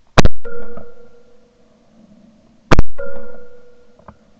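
Two shotgun shots about two and a half seconds apart, picked up by a camera mounted on the gun's barrel, each followed by a steady ringing tone that fades over about a second.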